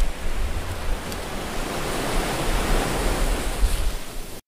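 Steady rushing wash of ocean waves with a low rumble, swelling a little in the middle.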